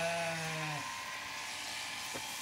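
A Zwartbles sheep bleats once, a single steady call of about a second, over the steady buzz of electric sheep-shearing clippers running nearby.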